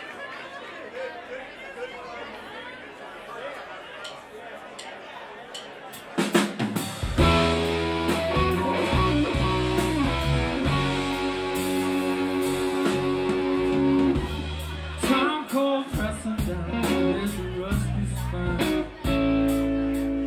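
Live band starting a song: after about six seconds of low crowd murmur, drum hits bring in the whole band, with electric guitar, bass, drum kit and held keyboard chords playing together.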